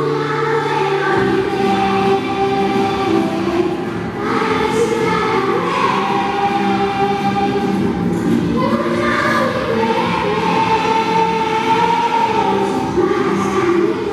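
A choir of primary-school children singing a Spanish Christmas carol (villancico) together, in long sustained notes.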